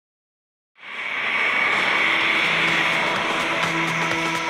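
A small twin-engine business jet's turbofan engines running with a steady high whine as it taxis, fading in from silence just under a second in. Background music enters faintly underneath in the second half.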